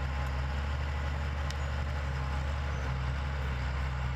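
Crawler bulldozer's diesel engine running steadily with a low, even hum.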